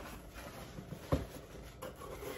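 A white cardboard box being handled and opened: faint rustling of the card, with one sharp knock about a second in and a lighter tap near the end.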